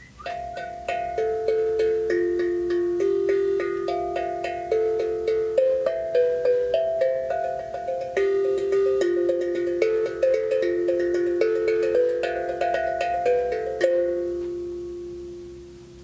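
Ajna 10-inch seven-note steel hank drum tuned to F Lydian, played with the fingertips in a flowing melody of overlapping ringing notes. The playing stops about 14 seconds in, and the last note rings and slowly fades.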